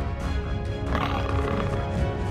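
Cartoon background music with a short animal cry sound effect about a second into it, lasting under a second.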